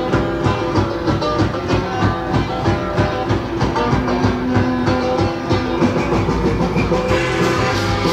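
Live rock band playing an instrumental stretch, guitar over drums keeping a steady beat.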